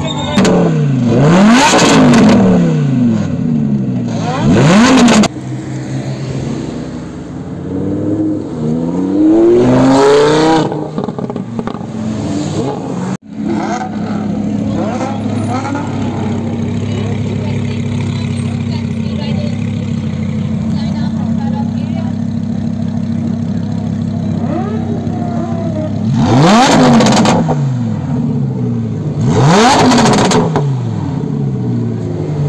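Lamborghini Huracán's V10 engine revved several times, each rev rising and then falling in pitch. It then idles steadily, with two more sharp revs near the end.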